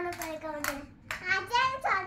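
Young child's high voice, drawn out and sliding in pitch, with several sharp clicks among it.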